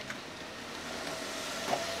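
Steady noise of a passing vehicle that swells slightly after the first second.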